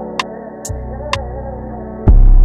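Sample-based hip-hop instrumental: a soulful sample with a wavering melody over sustained chords. A deep bass note comes in under it about two-thirds of a second in, with a sparse hi-hat tick now and then.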